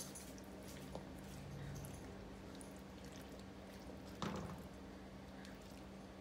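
Faint wet squishing of diced tomatoes being scraped from a glass jar with a silicone spatula into a wok of beans and corn, with one brief louder squelch about four seconds in, over a low steady hum.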